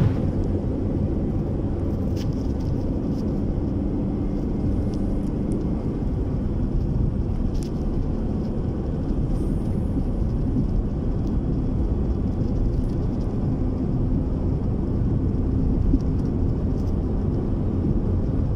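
Steady low rumble of a moving vehicle's engine and road noise, recorded from the vehicle, with a faint engine hum running through it.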